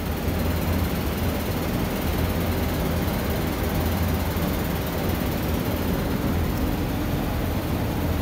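A steady low rumbling drone with a hiss over it, even and unchanging.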